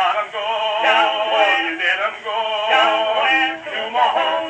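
Edison Standard phonograph with a flowered cygnet horn playing a Blue Amberol four-minute wax-type cylinder: an early acoustic recording of a song with wavering melody lines, its sound thin and narrow, with little bass and no high treble.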